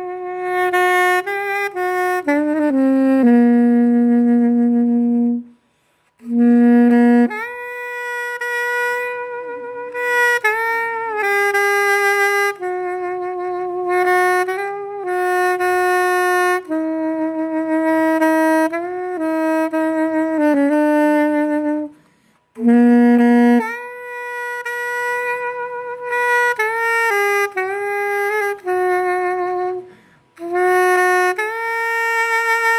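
Weril Brasil straight soprano saxophone with a one-piece body and neck, freshly overhauled, played through a Yamaha C mouthpiece. It plays a slow solo melody of long held notes, stopping twice briefly for breath.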